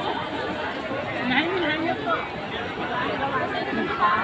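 Several people chattering and calling out to one another over a steady rushing noise.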